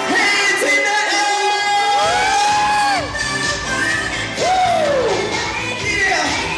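Female singer singing live into a microphone over loud pop music. She holds a long note that falls away about three seconds in, then slides down on another note near the end. A heavy bass comes in about two seconds in.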